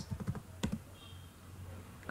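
Computer keyboard keys being typed: a quick run of keystrokes in the first second, then only a low steady hum.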